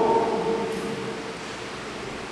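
A pause in a man's amplified speech: his last drawn-out syllable fades away over the first second, leaving a steady hiss of room noise.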